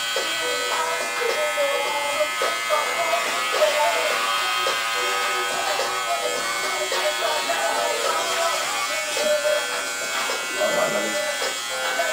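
Electric hair clipper buzzing steadily as it is run over a head, cutting hair short, with voices talking in the background.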